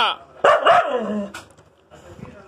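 Husky barking and yowling in its talkative way, with calls that rise and fall in pitch: one right at the start, then two more in quick succession about half a second in. The dog is begging for the food on the plate beside it.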